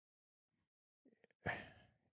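Near silence, then a man's short intake of breath about one and a half seconds in, with a few faint clicks just before it.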